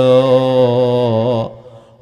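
A man chanting a line of Arabic devotional verse in a melodic style, holding one long note with a slight waver that fades out about a second and a half in.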